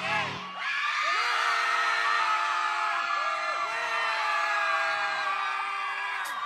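The song's backing music stops within the first half second. Then a studio audience cheers and screams, many high voices held over one another.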